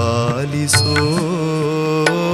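Kannada devotional music in a Carnatic style: a melodic line holding long notes with small bends and ornaments, with a few drum strokes.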